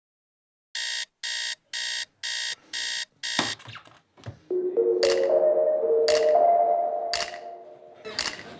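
Digital alarm clock beeping, six short beeps at about two a second, cut off a little past three seconds in with a few clicks as it is switched off. Soft background music with steady held notes comes in about halfway.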